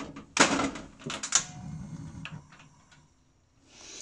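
A frying pan and wooden spatula knocking and clicking on a gas hob: one sharp knock, then a quick cluster of clicks and a few fainter ones. A short hiss comes in near the end.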